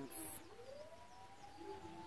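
A pause in speech with a brief hiss at the start. After that a faint tone rises in pitch over about a second and then holds steady, like a siren winding up far off.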